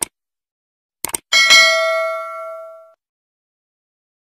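Subscribe-button animation sound effect: a mouse click, a quick double click about a second later, then a bell-like notification ding of several tones that rings out and fades over about a second and a half.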